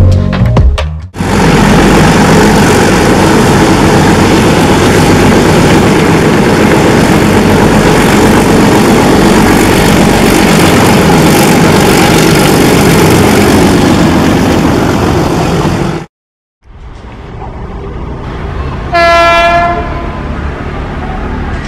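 A passenger train passing close at speed, a loud steady rush and rumble of wheels on rails lasting about fifteen seconds, which cuts off suddenly. After a short gap and quieter background, a locomotive horn sounds one steady note for about a second near the end. Music is heard briefly at the very start.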